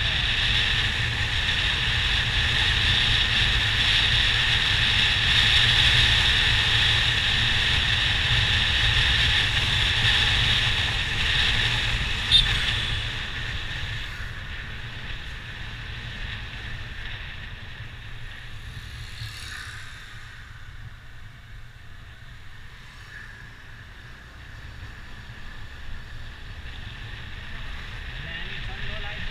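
Wind rushing over the microphone and low road rumble from a camera riding along a street, loud for about the first half and then dropping off after about fourteen seconds. A single sharp click about twelve seconds in.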